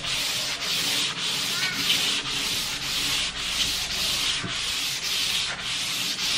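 Hand sanding bare timber with 240-grit sandpaper: back-and-forth rubbing strokes at about two a second, smoothing the wood before staining.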